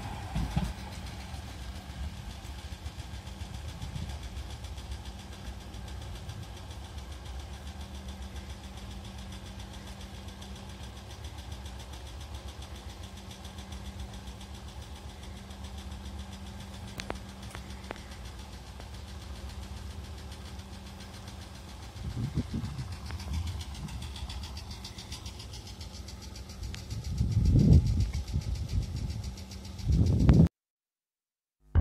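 Red funicular car and its track running past, a steady low mechanical rumble with a faint hum. There are louder low bursts about 22 and 27 seconds in.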